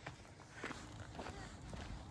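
Faint footsteps of a person walking on a paved road, regular at about two steps a second.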